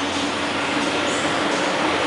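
Steady vehicle noise: an even hiss with a low hum and a steady droning tone underneath.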